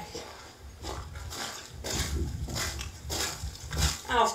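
Sheep making a series of short, low vocal sounds, roughly two a second.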